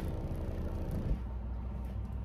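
Earthquake Tremor X124 subwoofer playing a steady low bass test tone in free air, unmounted with no enclosure. About a second in there is a click and the tone changes, and the fainter higher overtones above it fade away.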